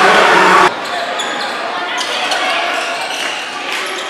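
Basketball game in a gym: loud crowd noise cuts off abruptly less than a second in. After it come quieter crowd voices and a basketball bouncing on the hardwood court, with scattered short clicks.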